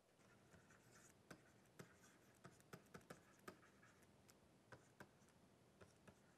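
Very faint stylus writing on a digital tablet: light, irregular taps and scratches as a word is handwritten.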